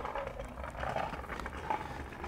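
Faint rustling of a canvas roll-top bag's fabric as it is held open and handled, over a low, steady outdoor rumble.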